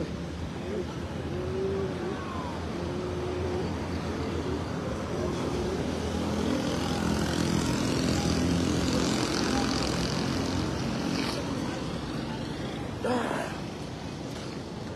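A motor vehicle's engine, heard over general road traffic, grows louder to a peak about midway and then fades as it passes. Brief voices can be heard in the first few seconds.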